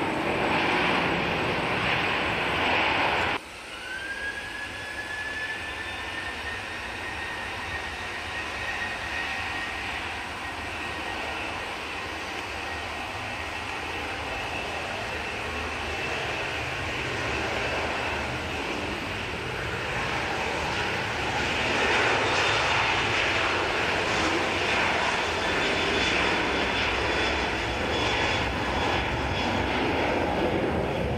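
Jet airliner noise that cuts off abruptly about three seconds in. Then a Garuda Indonesia Boeing 737-800's CFM56-7B turbofans spool up with a rising whine that settles into a steady tone, and the engine noise grows louder from about two-thirds of the way through as the jet rolls down the runway.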